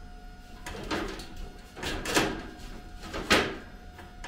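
Thin steel slat scraping and sliding in the notches of a steel square-tube rail as it is worked by hand: three scrapes about a second apart, the last the loudest.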